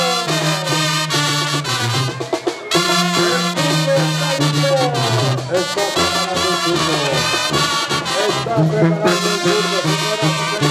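Brass band music: trumpets and trombones over a steady, rhythmic bass line, with a brief lull a little over two seconds in.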